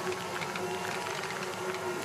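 Steady ambience of a biathlon shooting range: an even wash of outdoor crowd and course noise with a faint held tone and a few faint scattered ticks, and no loud shots.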